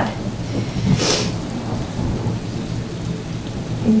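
Steady rain with a low rumble of thunder, a storm ambience running under the reading, with a short hiss about a second in.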